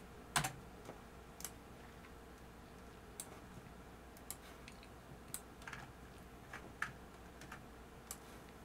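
Scattered computer keyboard keystrokes, single irregular taps a fraction of a second to a second or so apart, the loudest about half a second in, over a faint steady hum.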